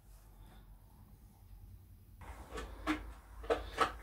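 Near silence for about two seconds, then a few soft knocks and clicks of a plastic vacuum bag and vacuum sealer being handled.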